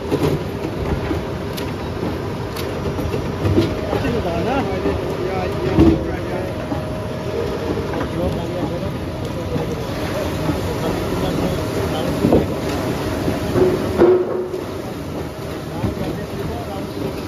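Rotary veneer peeling lathe running, its electric motors humming steadily while it peels a log into veneer sheet, with the rattle of the machine and a few sharp knocks, the loudest about six seconds in.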